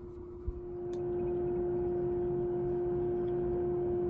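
A steady droning tone; about a second in, a second, higher tone and a faint regular pulse join it as it grows louder.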